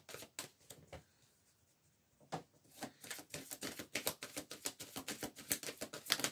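Tarot cards being handled by hand: a few light card clicks, then after about a second's pause a fast, dense run of clicks as the cards flick against each other.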